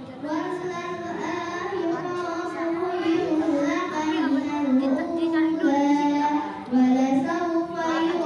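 A boy reciting the Qur'an in the melodic tilawah style, drawing out long ornamented notes that waver and glide in pitch, with a brief pause a little before the end.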